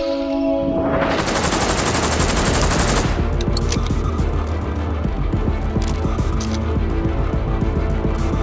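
Rapid automatic gunfire sound effects, a continuous fusillade over a dramatic music score. It starts about a second in, densest for the first two seconds, then thins to scattered shots.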